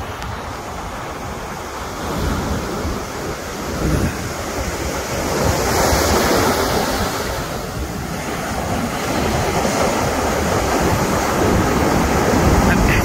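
Rushing noise of ocean surf and wind on the microphone, swelling about halfway through and growing louder toward the end.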